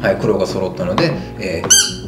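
A squeaky toy banana from the Ninja Banana game gives one short squeak near the end as it is grabbed, the pitch rising and then falling.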